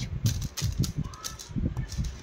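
A long beaded necklace chain, gold-tone links strung with red and pearl beads, clicking and rattling against a wooden tabletop as it is laid out by hand: a scatter of small light clicks with a few dull knocks.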